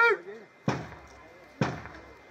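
Two heavy drum beats about a second apart, each with a deep low thud and a short decay: the introductory beats that bring a pipe band in, just before the bagpipes strike up. The last syllable of a shouted command trails off at the start.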